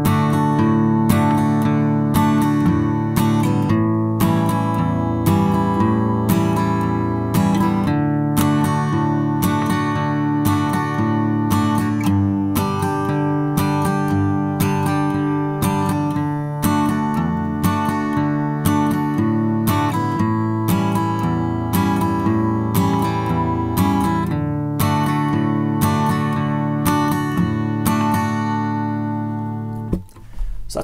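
Steel-string acoustic guitar played with a pick in a steady boom-chick pattern: a bass note on the chord's root, then a down-up strum, with the bass alternating. The chords run A7, D and G in the key of D.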